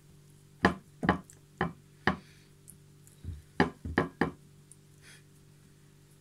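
About eight sharp, irregular knocks and taps over the first four seconds or so, from hands pressing hardened chocolate-and-turrón spread and broken cake-base pieces onto a ceramic plate, then it goes quieter.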